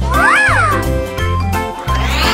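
A single cat-like meow, rising then falling in pitch, over steady children's background music. A rising swoosh starts near the end.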